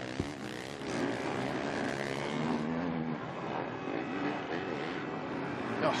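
Four-stroke 450cc motocross bike engines running on track, revs rising and falling as the riders accelerate and back off.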